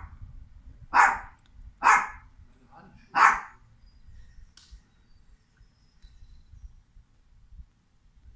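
A small pet dog barking: three sharp barks about a second apart.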